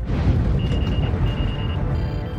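Starship bridge sound effects from a TV battle scene: a loud low rumble with rapid high electronic beeping in two short bursts, starting about half a second in.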